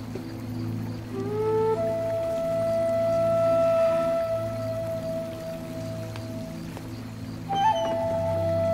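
Background drama score: a soft, sustained low drone under a solo melodic instrument. The solo slides up into one long held note about a second in, then begins a new phrase near the end.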